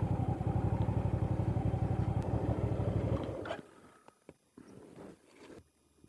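Hyosung GV650's V-twin engine running at low revs with a rapid, even pulse. It dies away about three and a half seconds in as the engine is shut off, leaving a few faint clicks.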